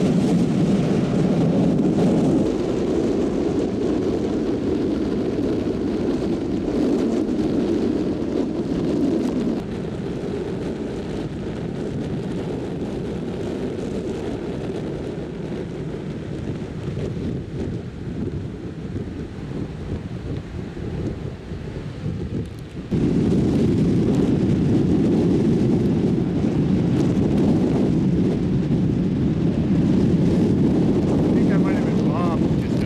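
Ocean surf and wind on the microphone make a loud, steady low rumble. It eases somewhat about a third of the way through, then jumps back up abruptly about three-quarters of the way through.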